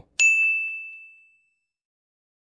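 A single bright ding sound effect, one high bell-like tone struck just after the start and fading out over about a second: a score-point chime as a win counter goes up by one.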